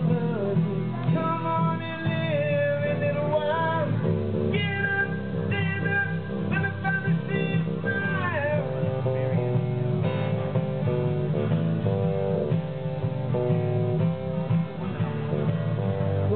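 Small live band playing: strummed acoustic guitar and electric bass under a lead melody that slides and bends between held notes.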